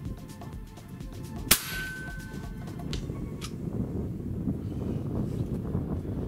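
One shot from a .30-calibre Hatsan Hercules PCP air rifle about a second and a half in: a sharp crack followed by a short metallic ring. Two fainter clicks come about a second and a half later. A low rumble of wind runs underneath.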